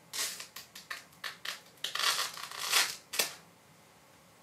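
Clear plastic film being pulled off a phone box, crinkling and crackling in a quick series of rustles that stop a little after three seconds in.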